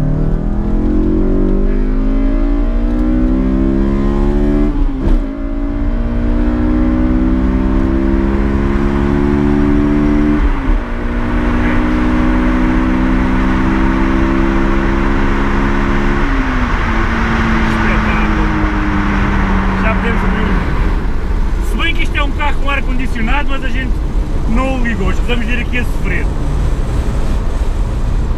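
Honda S2000's naturally aspirated four-cylinder VTEC engine under full-throttle acceleration, heard from inside the cabin. The pitch climbs high through the revs and drops at quick upshifts about five and ten seconds in, then falls away after about sixteen seconds as the throttle is lifted. Voices follow over the engine near the end.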